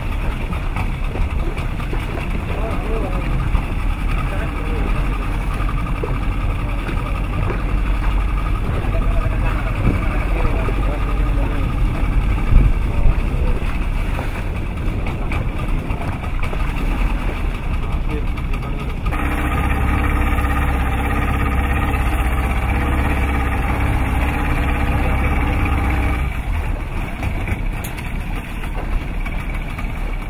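Boat engine idling, mixed with wind and water noise. About nineteen seconds in, its hum becomes steadier and stronger for about seven seconds, then drops back.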